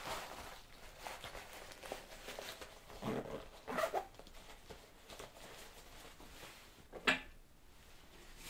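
Faint rustling and small clicks of supplies being handled at a medical supply trolley, with a few louder handling sounds about three to four seconds in and a sharp click near the end.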